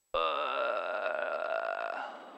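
Cessna 172 stall warning horn, cutting in suddenly and sounding as one steady tone during the landing flare. It sounds because the wing is close to the stall as the plane settles onto the runway.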